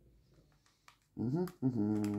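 A woman's voice: after about a second of near silence, a short gliding vocal sound, then a low, held, closed-mouth hum.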